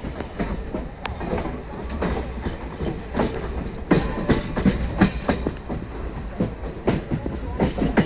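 Wheels of a moving express train clattering over rail joints and pointwork, heard from a coach doorway: an irregular run of clicks and knocks over a steady rumble, growing busier and louder about halfway through.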